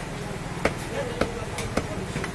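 Meat cleaver chopping goat meat on a wooden log chopping block: three sharp chops about half a second apart, with a fainter knock between the last two.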